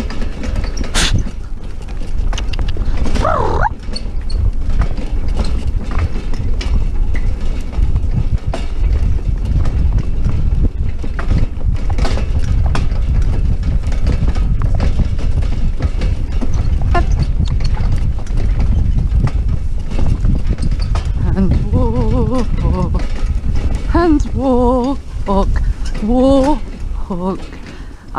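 Horse cantering in harness, pulling a two-wheeled cart over grass: hoofbeats and cart rattle over a steady low rumble.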